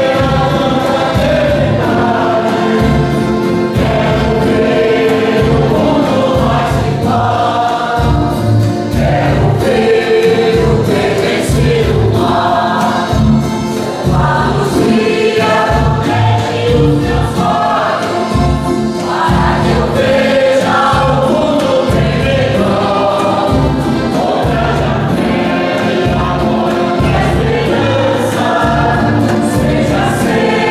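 Church choir singing an entrance hymn with acoustic guitar accompaniment over a steady beat.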